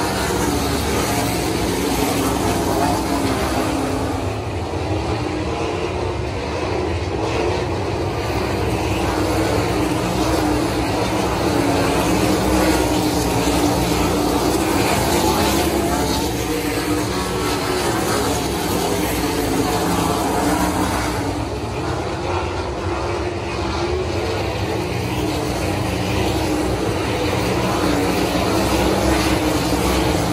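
A field of 410 sprint cars racing on a dirt oval, their open-wheel V8 engines running together at speed. It is a loud, continuous engine noise that swells and eases slightly as the cars come round.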